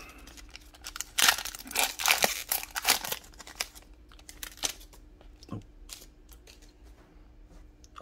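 Foil wrapper of a Magic: The Gathering collector booster pack being torn open and crinkled by hand: a run of sharp crackles for about the first four seconds, then fainter scattered clicks and rustles as the cards are drawn out.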